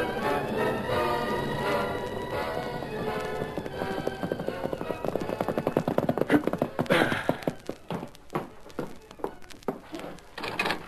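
An orchestral music bridge for about the first four seconds gives way to the fast hoofbeats of a galloping horse, a radio sound effect. The hoofbeats build and then fade away toward the end.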